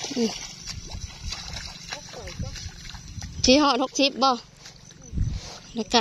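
Wet mud squelching and sloshing as rice seedlings are pulled up by hand from a flooded paddy nursery bed, then bare feet stepping in the mud near the end. A person speaks briefly twice, loudest a little past halfway.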